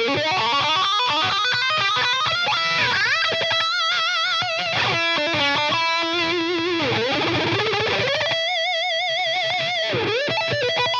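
Jackson X Series Soloist electric guitar with active EMG 81/85 pickups, played through a high-gain amp. It plays fast shred runs with pitch swoops about three and seven seconds in, then ends on a long note held with wide vibrato.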